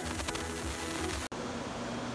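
Small oxyhydrogen (hydrogen–oxygen) torch flame hissing with a fine crackle and a faint steady hum. It cuts off abruptly about a second and a half in, leaving quieter room tone.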